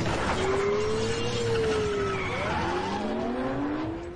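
Loud movie sound effects playing in a cinema: a dense rushing noise with squealing tones that glide up and down in pitch, cutting off suddenly at the end.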